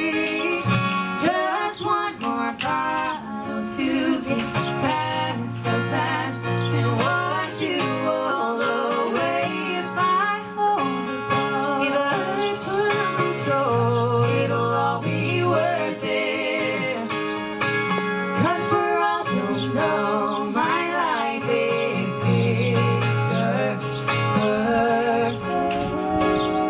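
Live acoustic guitar accompanying a man and a woman singing together into microphones, with the woman's voice carrying the line later on.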